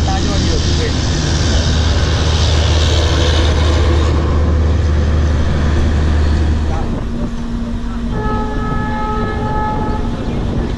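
Heavy low rumble and running noise of a moving Indian passenger train, heard from inside the coach with wind on the microphone. After a change about seven seconds in, the rumble drops and a train horn sounds one steady blast of about two seconds near the end.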